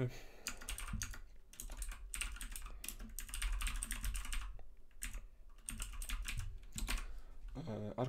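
Typing on a computer keyboard: quick runs of keystrokes, with a pause of about a second midway before a second run.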